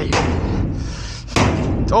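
Rusty sheet-metal cabinet drawer being forced open: metal scraping and knocking, with a loud bang about a second and a half in as the drawer comes free.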